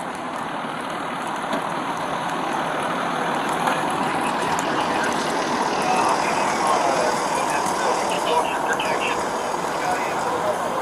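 Steady noise of idling fire engines and other vehicles, with faint voices in the distance; it grows a little louder over the first few seconds.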